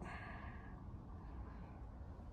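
A soft exhale or sigh close to the microphone, lasting under a second, then quiet room tone with a low steady hum.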